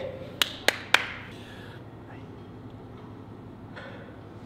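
Three sharp hand claps about a quarter second apart within the first second, followed by steady low room noise.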